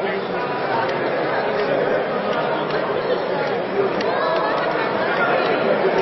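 Spectators talking over one another around a fight cage, a steady hubbub of many overlapping voices.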